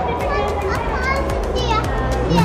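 Children's high voices talking and calling over a busy background of chatter in a large room.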